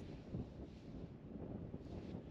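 Faint wind buffeting the microphone, a low uneven rumble, with one soft brief knock about a third of a second in.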